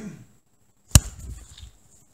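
A cockatiel taking off from a perch: a sharp, loud knock about a second in, then a short flurry of wing flutter lasting under a second.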